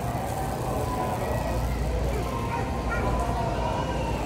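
Shopping cart and manual wheelchair wheels rolling over a concrete store floor, a steady low rumble, under faint voices of other shoppers.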